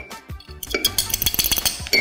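Metal fork whisking in a glass mug of warm water, stirring to dissolve instant coffee and sugar: rapid clinking and scraping against the glass that gets busier about half a second in.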